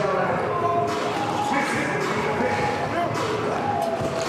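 Basketball bouncing on a hardwood court with a few sharp knocks, under the steady chatter of voices in an arena.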